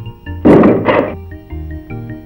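Film soundtrack music with a repeating bass figure, cut across about half a second in by a loud heavy thud lasting around half a second.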